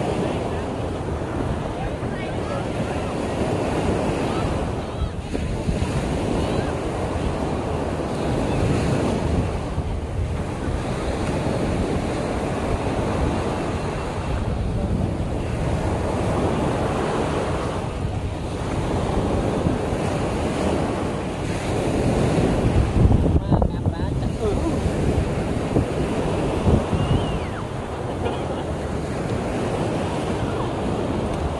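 Sea surf breaking and washing up a sandy beach, swelling and easing every few seconds, loudest a little past two-thirds of the way through, with wind buffeting the microphone.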